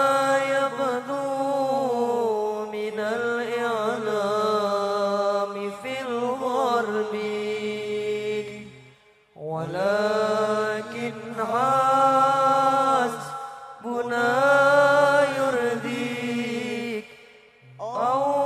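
Arabic sholawat (Islamic devotional song) sung in long, drawn-out vocal phrases with melismatic ornaments, broken by short pauses for breath about nine seconds in and again near the end.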